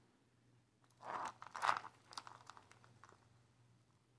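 Faint handling noise of a charm-laden chunky chain being worked by hand: a short crunchy rustle about a second in, then a few small clicks that fade out.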